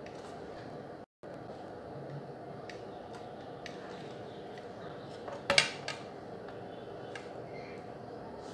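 Hands handling a bare laptop motherboard on a bench: a few light clicks and one brief clatter about five and a half seconds in as the board is picked up and turned over, over steady background noise.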